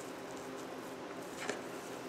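Refrigerated crescent roll dough being unrolled by hand on a wooden cutting board: faint, soft handling sounds with one light tap about one and a half seconds in.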